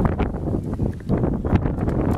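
Racehorses galloping on a dirt track, a quick irregular run of hoofbeats, with wind buffeting the microphone.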